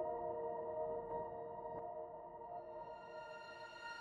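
Soft orchestral score of sustained, held chords from a piano pad, with flautando violins and violas fading in on higher notes in the second half.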